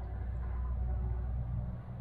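Steady low background rumble with no distinct handling sounds.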